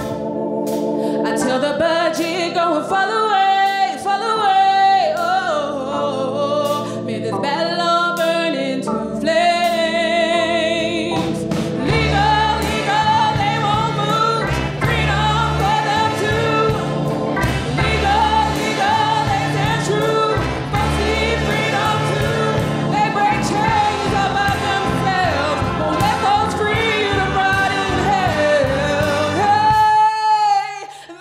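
Live band with a woman singing lead over backing singers, electric guitars, drums and keyboard. The first part is mostly voices over light accompaniment; about twelve seconds in the bass and drums come in heavier and the full band plays on.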